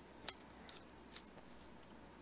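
Faint crinkles and ticks of folded origami paper being flattened and handled by fingers: a few brief clicks, the sharpest about a quarter second in and another just after a second.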